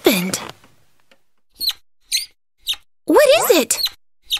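High-pitched cartoon vocal squeaks: a gliding squeal at the start, three short squeaks, then a longer wavering squeal about three seconds in.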